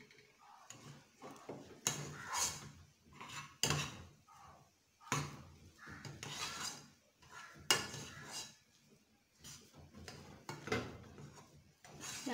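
Metal potato masher mashing boiled potatoes in a non-stick pot: irregular scraping and knocking strokes against the pot, roughly one a second.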